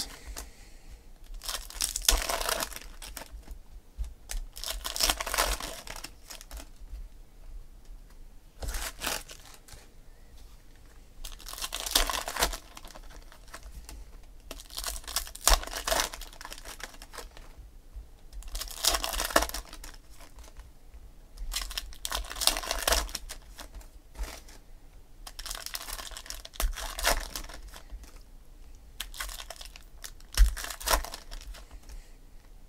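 Foil trading-card packs being torn open and crinkled by hand. There are about nine short bursts of tearing and rustling, one every three to four seconds, with quiet gaps between them.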